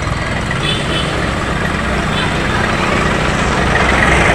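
Street noise: a vehicle engine running steadily, with the murmur of a crowd of voices over it, growing slightly louder toward the end.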